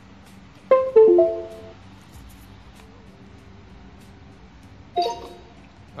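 iNMOTION V8 electric unicycle's power-on chime: a short tune of a few notes about a second in, followed by another brief tone near the end.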